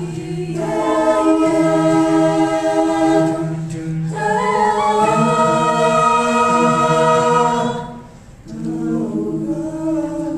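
High school vocal jazz ensemble singing a cappella, several voices holding long chords together. The singing breaks off briefly about eight seconds in, then resumes.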